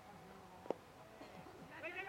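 A single sharp crack of a cricket bat striking the ball, about two-thirds of a second in, over faint open-air background; a drawn-out distant call follows near the end.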